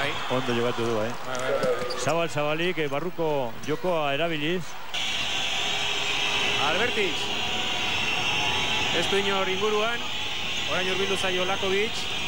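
TV basketball commentary: a voice speaking over steady arena crowd noise, with an abrupt edit in the sound about five seconds in.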